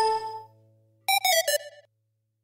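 Synthesized chime sound effects: a bright ringing chime that fades out within half a second, then about a second in a quick run of short bell-like notes falling slightly in pitch.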